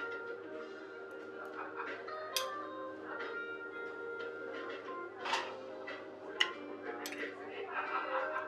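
Background music with a few sharp clinks of a metal serving spoon and fork against a metal baking tray and china plates as fish is portioned out.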